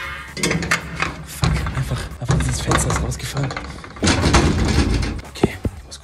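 Rustling and handling noise close on a phone's microphone as someone shifts about in a cramped hiding spot, in several bursts, with two sharp clicks near the end.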